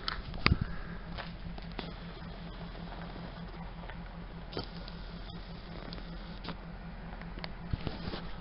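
Handling noise from a handheld camera being moved about: a few scattered knocks and rubs on the microphone, the loudest about half a second in, over a low steady hum.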